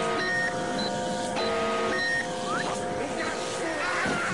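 Cartoon sound effect of an electronic contraption running: a steady hum of several held tones, with short high electronic beeps from a countdown timer repeating a little under twice a second. A brief rising whistle-like glide comes near the middle.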